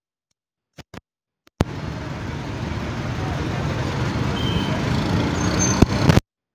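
A bus engine running close by starts abruptly about a second and a half in and grows gradually louder.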